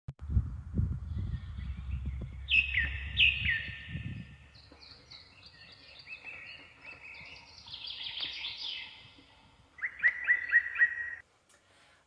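Wild birds singing and calling outdoors. Two sharp falling notes come around the three-second mark and a quick run of about five notes near the end, over a low rumble during the first four seconds.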